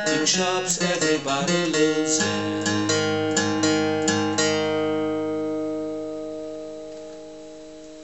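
Acoustic guitar, capoed at the fourth fret, picked slowly note by note. About two seconds in a chord is struck and left ringing while a few higher notes are picked over it, then it fades away over the last few seconds.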